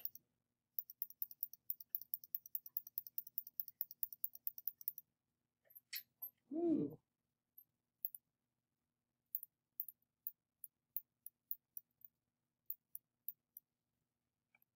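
Rapid run of small clicks from a computer mouse, about ten a second, for some four seconds, then scattered single clicks, as a layer's opacity is adjusted. About six and a half seconds in comes a short hum from a voice, falling in pitch.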